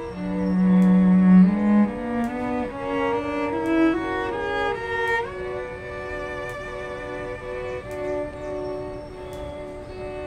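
String quartet of two violins, viola and cello playing held, bowed notes. A loud low cello note opens it and steps upward over the first two seconds; the upper strings then carry the line in notes of about half a second to a second.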